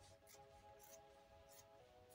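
Faint snips of scissors cutting through cotton print fabric, a few short strokes spread across the two seconds, over quiet background music with held notes.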